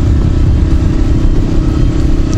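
Honda CBR125R's single-cylinder four-stroke engine running at a steady cruise, with strong wind rumble on the helmet-mounted microphone.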